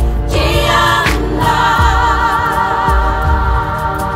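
A choir of Aboriginal women singing a song in Yanyuwa, several voices holding long notes with a wavering vibrato. A regular low bass pulse sounds underneath.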